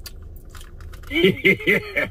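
A stream donation alert plays from about a second in: a short burst of voice, a quick run of pitched syllables. Before it, only a low steady hum of the car cabin and a few faint clicks.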